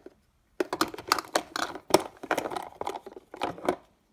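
Small erasers, toys and pencils clattering against one another and the plastic as a hand rummages through a plastic organizer box: a quick run of small knocks and rattles from about half a second in until near the end.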